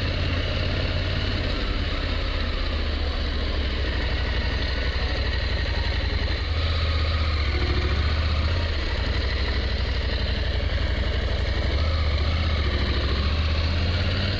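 Motorcycle engine running at low road speed, heard close up from a camera on the bike: a steady low drone that swells slightly about halfway through and again near the end.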